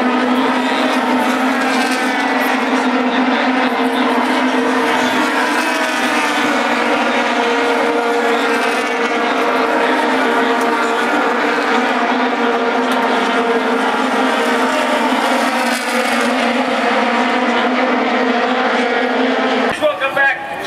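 A field of IndyCars (Honda 3.5-litre V8s) running around the oval together. Their many overlapping engine notes blend into a loud, steady drone, with some pitches slowly shifting as cars pass.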